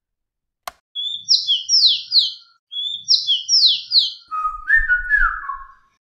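A songbird singing: two matching phrases of quick, downward-sliding whistled notes, then a lower, shorter warbled phrase near the end. A single click comes just before the song starts.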